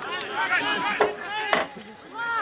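A football being struck: two sharp thuds about half a second apart, amid players' voices calling and shouting on the pitch.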